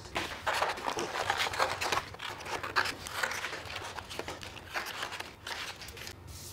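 Scissors cutting out a shape from black card: a quick, irregular run of snips, with the card rustling as it is turned.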